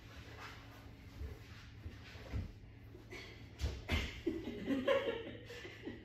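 A few soft thuds of bodies and hands on judo tatami mats, then a person laughing for a moment about four seconds in.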